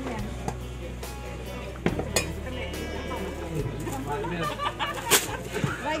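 A cleaver striking a wooden chopping board while chicken is cut, a few sharp knocks, with voices of people talking and background music.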